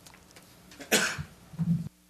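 A person coughs once, sharply, followed by a short low throat sound, and then the sound cuts off abruptly, leaving a steady faint hum.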